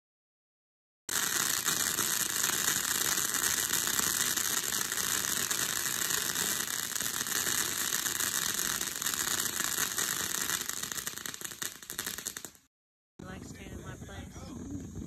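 A ground fountain firework spraying sparks with a dense, steady crackling hiss. It starts abruptly about a second in and dies away near the end.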